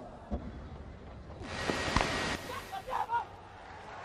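Cricket ground crowd noise swelling about a second and a half in, with a single sharp knock of bat on ball about two seconds in and a few brief shouts just after.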